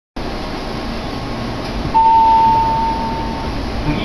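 A steady high-pitched beep sounds about two seconds in and holds for about a second and a half, over a constant background hum and hiss.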